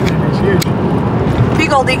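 Steady rumble of road and engine noise inside a moving car's cabin, starting abruptly, with a sharp click about half a second in. A voice comes in near the end.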